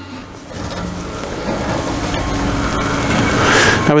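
Castor wheels of a DTP04 side-shift drum depalletizer rolling across a concrete floor as it is manoeuvred with a full drum of water, a rumbling noise that builds toward the end.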